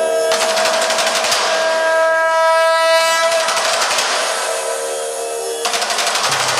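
Kerala temple percussion music: rapid rolling chenda drum strokes under a long held note from a wind instrument. The held note drops out near the end, leaving the drumming.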